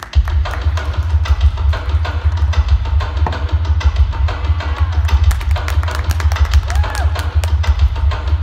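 Loud performance music with a heavy, continuous bass and a busy drum beat, which comes in suddenly at the start after a quieter passage of held tones.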